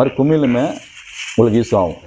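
A man's speech in two short bursts, with a scratchy rubbing noise filling the pause between them about a second in.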